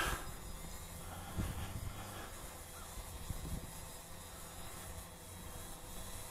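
Faint wind on the microphone: a low, uneven rumble with a few small gusts over a steady quiet hiss.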